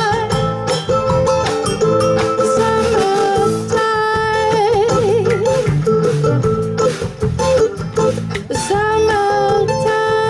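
Live band playing a Latin-style jazz arrangement: a woman singing long notes with a wide vibrato over strummed acoustic guitar, electric bass and a drum kit.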